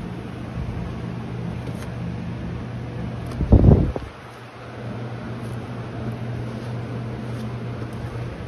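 A steady, low machine hum, with one dull thump about three and a half seconds in.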